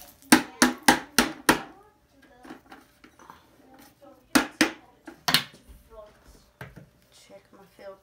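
Plastic vacuum dust bin being knocked hard to shake out packed dirt: a quick run of five sharp knocks, then three more a few seconds later and one last one.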